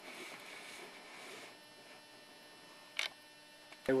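Camcorder zoom motor whirring faintly for about the first second and a half, then a single sharp click about three seconds in, over a low steady hum.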